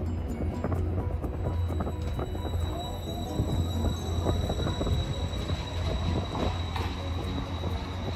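Hiroden Green Mover low-floor electric tram pulling away: a steady low hum under the electric drive's whine, which rises in pitch as it accelerates, with scattered clicks of wheels on the rails.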